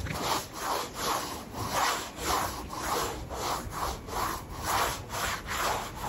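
A short stiff-bristled hand broom sweeping a paved stone floor, in rhythmic scraping strokes about two a second.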